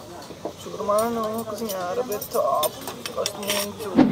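Soft voices talking, with a few light clinks of a metal serving spoon against a steel serving pot near the end.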